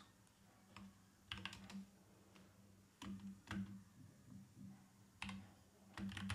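Faint computer keyboard typing: a handful of separate keystrokes with short pauses between them.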